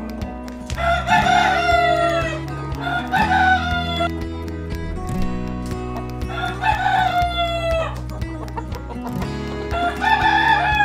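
Roosters crowing: three long crows, each about a second and falling in pitch at the end, one after another, with a fourth starting at the very end. Hens cluck between the crows.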